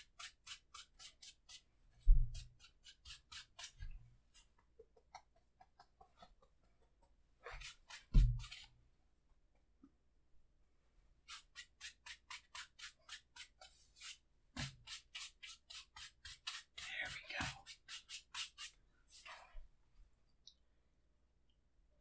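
Wide brush scrubbing wet oil paint across a canvas in quick, regular strokes, about four a second, in several runs with pauses between them: a wet-on-wet sky being blended with criss-cross strokes. Two low thumps, about two seconds in and about eight seconds in.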